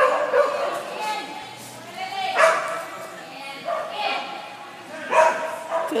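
A dog barking in high yips, about four times over a few seconds, echoing in a large hall.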